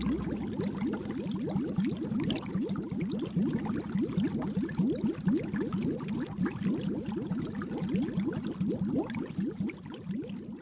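Bubbling sound effect: a steady, dense stream of short blips that rise in pitch, many each second.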